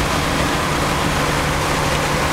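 Steady road and wind noise with a low engine hum inside the cabin of a 1934 Packard cruising at highway speed.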